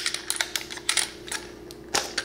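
A rapid run of sharp plastic clicks and taps from a trail camera's plastic case being handled, its side latches flipped open and the hinged front swung open, with the loudest snap near the end.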